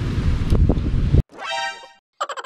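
Wind buffeting the camera microphone for the first second or so. Then the sound cuts off abruptly and a short pitched tone, an effect added in editing, swells and fades.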